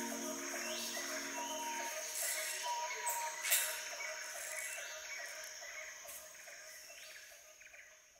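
Nature ambience of birds calling and a steady insect trill at the close of a song, with the last held music notes dying away about two seconds in. The ambience then fades out toward the end.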